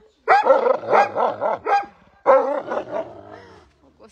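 A Central Asian Shepherd Dog (alabai) vocalizing loudly at the camera, hollering in two long bouts that waver up and down in pitch.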